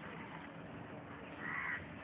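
A crow caws once, briefly, about one and a half seconds in, over faint steady background noise.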